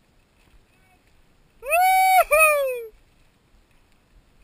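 A loud, high-pitched whooping shout from one of the riders, held, then briefly broken and falling away in pitch, lasting just over a second.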